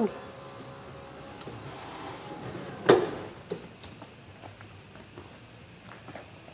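2010 Ford Explorer's power-folding third-row seat folding down: the motor runs faintly, then the seat lands with a single knock about three seconds in, followed by a few light clicks.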